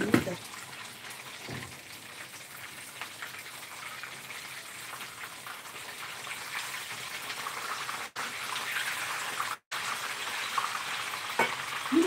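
Food sizzling in a frying pan on the stove: a steady hiss that grows a little louder in the second half. The sound cuts out completely twice, briefly, about two-thirds of the way through.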